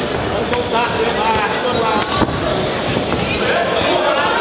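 Crowd voices shouting and calling out during a boxing bout, with several sharp thuds of gloved punches landing; the loudest comes a little past halfway.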